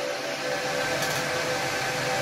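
Server cooling fans running steadily: an even rush of air with a high, steady whine.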